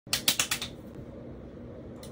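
A rapid run of about five sharp taps or clicks in the first half second, then a low steady room hum.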